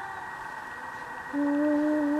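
A toddler's voice 'singing' one long held note, starting a little past halfway and rising slightly in pitch, over a steady background hum.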